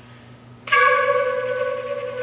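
A woodwind ensemble comes in together about two-thirds of a second in with a sudden, accented chord of several notes, then holds it steady. Before the entry only a faint single held note sounds.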